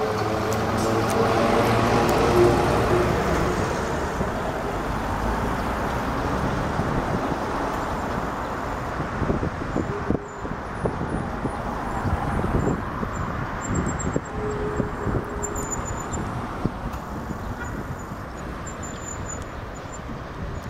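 A trolleybus drives past close, its electric traction motor whining as it goes and loudest in the first few seconds. Then comes steady road noise from trolleybuses and cars moving slowly along the street, with a few scattered knocks.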